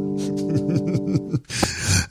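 A held electric keyboard chord rings and dies away while a man laughs over it in short breathy bursts.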